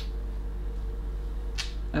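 A steady low background hum with a faint even tone above it. About a second and a half in comes a short airy whoosh, like a quick intake of breath.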